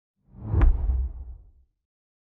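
Logo ident sound effect: a whoosh swelling to a sharp hit with a deep boom about half a second in, then rumbling away within about a second.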